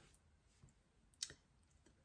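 Near silence: room tone in a pause, broken by a single brief click a little over a second in.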